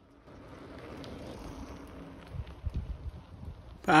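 Outdoor ambience with wind rumbling on the microphone, fading in just after the start and gusting more strongly in the second half, with a few faint ticks.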